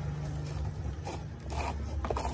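Fingers scraping and rubbing at caked dirt around a knob shaft on the grimy casing of a Puxing PX-247UR radio cassette player: a few short scratchy strokes in the second half, over a low steady hum.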